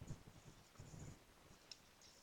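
Faint scratching of a mechanical pencil writing on paper, with a brief light click later on.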